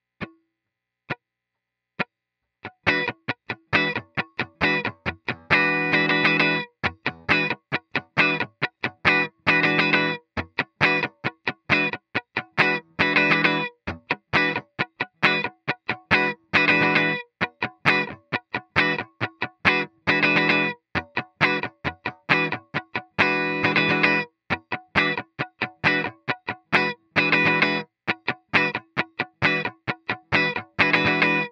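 Electric guitar playing a slow funk rhythm on an E9 chord: short, choppy chord stabs and muted strokes, a one-bar pattern with a quick down-up-down sixteenth-note triplet on the fourth beat, repeating about every three and a half seconds. A few soft clicks come before the strumming starts, about three seconds in.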